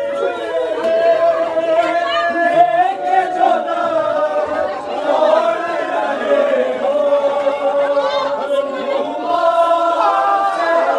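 A group of men chanting a noha, a Shia mourning lament, together behind a lead reciter, in a continuous, loud chant with long held notes.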